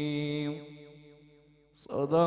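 A male Quran reciter holds the last long note of a melodic (tajweed) recitation into a microphone; it stops about half a second in and trails off in echo. His voice starts again just before the end, on the closing formula.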